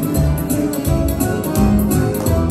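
Piano accordion playing a lively tune over an electronic keyboard accompaniment with a steady beat.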